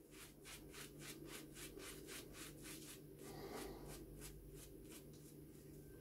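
Muzhskoy Materik shaving brush working lather onto a stubbled chin and cheeks. Faint, quick bristle strokes come about five a second, then grow sparser and fainter in the second half.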